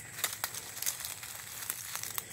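Footsteps through dry fallen leaves on a forest floor: a scatter of irregular light crunches and rustles.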